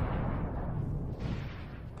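Explosion sound effect for an overinflated cartoon letter bursting and splattering slime: a loud, deep blast dying away slowly, swelling briefly again a little past a second in.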